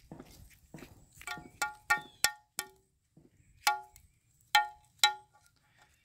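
Rusty scrap metal pieces knocking against each other as they are handled. This gives about eight irregular metallic clinks, each with a short, bright ringing tone.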